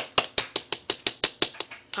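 Tail of a five-ply wooden fingerboard deck snapped down against a wooden tabletop again and again: a run of sharp clacks, about five a second. These are ollie pops showing how much pop the deck has.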